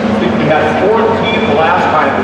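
A small slingshot race car engine running on a dirt track, its pitch rising near the end, with indistinct voices over it.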